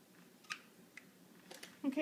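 Scissors snipping through a flower stem bound with florist wire and floral tape: one sharp click about a quarter of the way in, a fainter one after it, then a few light clicks as the scissors are put down.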